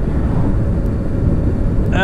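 Kawasaki ZX-6R motorcycle's inline-four engine running steadily while riding along, under a heavy low rumble of wind on the microphone.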